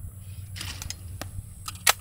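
A few faint clicks, then a single sharp crack near the end: a shotgun fired at a thrown clay target.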